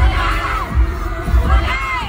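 Live pop concert music played loud through arena speakers: a heavy bass-drum beat a little under twice a second under a held synth tone, with high voices rising and falling above it.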